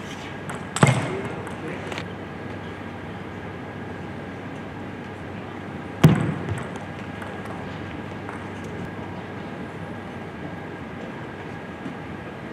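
Table tennis match in an indoor hall: a steady hall background broken twice by a sudden loud sound, about a second in and again about six seconds in, each trailing off in the hall's echo.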